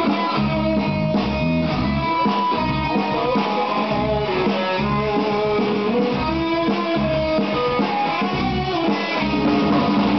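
Live electric guitar playing through an amplifier: a picked and strummed rock riff with changing notes.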